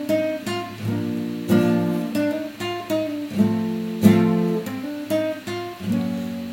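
Acoustic guitar strumming chords in a steady rhythm, about two strums a second, an instrumental passage with no singing.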